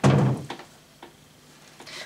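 A small cabinet door swung shut with a thud at the start, followed by two faint clicks about half a second apart.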